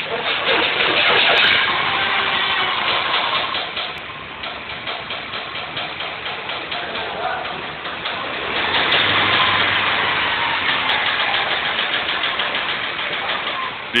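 Mini Cooper engine starting and running while a wrench is banged rapidly and rhythmically on the metal lift rack, faking a rod knock. The knocking is loudest in the first few seconds, eases off in the middle, and comes back loud in the second half.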